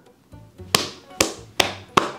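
A hand slapping a thigh four times in quick succession while the person laughs, sharp smacks about two a second.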